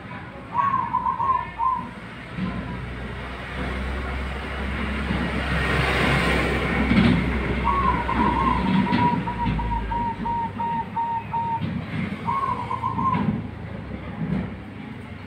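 Caged zebra dove (perkutut) cooing three times: a short call about half a second in, a longer call about two-thirds of the way through that ends in a string of rapid repeated notes, and another short call near the end. Under it, a broad rumble of background noise swells and fades in the middle.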